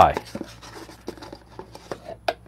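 Faint scratching and a few light taps from a cardboard product box being handled.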